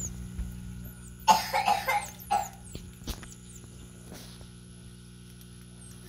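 A person coughing several times in quick succession a little over a second in. Faint, short, high-pitched chirps that fall in pitch recur in the background.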